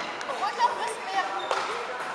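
A single thump in a large echoing sports hall, followed by faint chatter of people talking in the hall.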